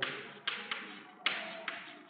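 Chalk tapping and scraping on a chalkboard as a line of text is written: about five short, sharp strokes, each dying away quickly.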